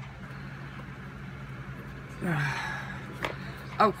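Cardboard presentation box being opened by hand, with a soft rustle and one sharp click a little after three seconds in, over a steady low hum.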